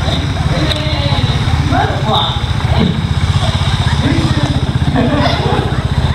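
A trials motorcycle engine idling steadily with a fast, even pulse.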